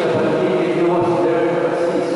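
A man's voice chanting into a microphone, holding long steady notes.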